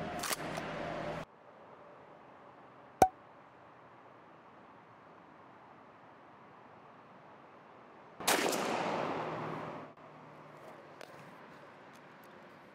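A single 20-gauge shotgun shot from a Winchester SXP pump gun firing a Winchester Long Beard XR turkey load, about eight seconds in; it starts sharply and its echo fades over about two seconds. A single short sharp click comes about three seconds in.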